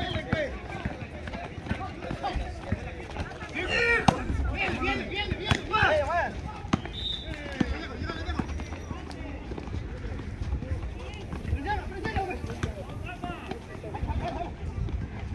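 Players and onlookers shouting during an outdoor basketball game, loudest about four to six seconds in, with a basketball thudding on the asphalt court now and then.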